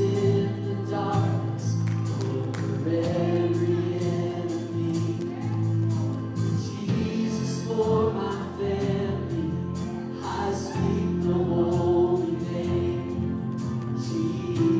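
Live worship band and group vocals: several singers over keyboard, bass guitar, acoustic guitar and a drum kit keeping a steady beat.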